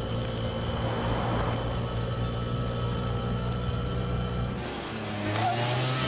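Auto-rickshaw engine running steadily as it drives along, its note shifting about five seconds in as it reaches the hotel.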